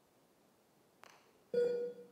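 A single pitched musical tone, steady in pitch and about half a second long, starting sharply near the end after near-quiet, with a faint click about a second in.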